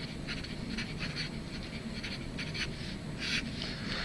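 Felt-tip marker rubbing across paper in a series of short, separate strokes as a word is written and underlined.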